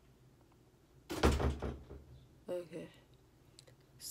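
A person's wordless vocal sounds: a loud breathy burst with a low thump about a second in, then a short hummed sound a moment later.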